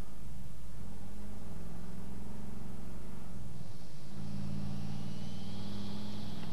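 A steady low droning hum that shifts pitch about three and a half seconds in, with a faint high hiss coming in near the end.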